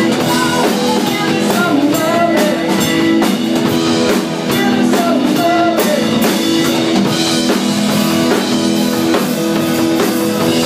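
Live rock band playing: electric guitar, bass guitar and drum kit, with a woman singing lead.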